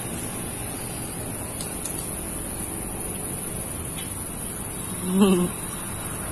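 Steady, even background noise with no distinct events, and a short laugh near the end.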